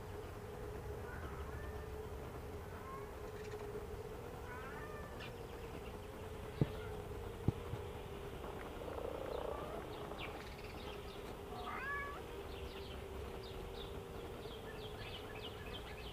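Honeybees clustered outside their hive's entrance buzzing in a steady, slightly wavering hum, with faint short high chirps now and then and two sharp clicks a little past the middle.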